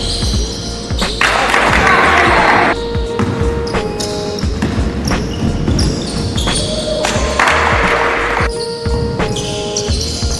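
Basketball play on a wooden gym court, the ball bouncing, with music playing over it.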